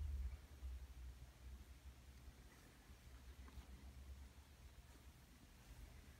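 Near silence: faint room tone with a low rumble, a little louder in the first half-second.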